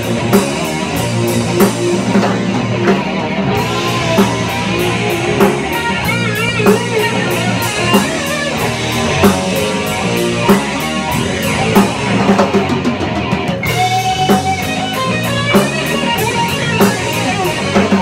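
Live rock band playing an instrumental passage: electric guitar lead lines with bent, wavering notes over electric bass and a drum kit keeping a steady beat.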